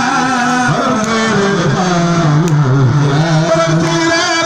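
A man chanting a khassaide, a Mouride religious poem, into a corded microphone, holding long, slowly wavering notes that drop to a lower pitch about halfway through.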